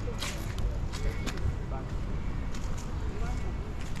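Outdoor ambience of a quiet town square: faint voices of people nearby over a low, steady background rumble, with a few soft footsteps.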